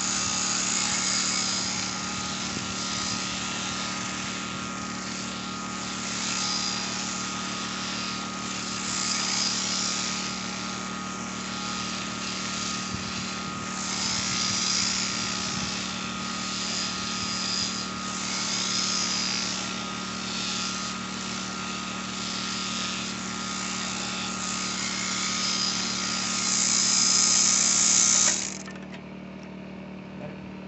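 Sheep shearing handpiece on a flexible drive shaft running steadily, its comb and cutter going through the fleece, the cutting hiss swelling and fading with each stroke. The machine stops suddenly near the end as the shearing is finished.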